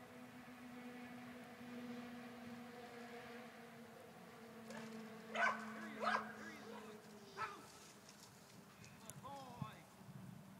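A dog barking three times, the first two barks close together about halfway through and the third a second later, followed by a few short, higher yelps near the end, over a steady low hum.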